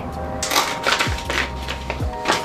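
Paper envelope being opened and a card pulled out of it: a run of short, crisp paper rustles and crinkles.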